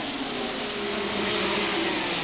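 A pack of ARCA stock cars running together at racing speed: a steady, blended engine drone that swells slightly about a second in.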